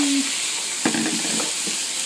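Finely chopped chicken breast, onion and garlic sizzling in a hot frying pan with a steady hiss, stirred with a wooden spatula that knocks against the pan a few times about a second in.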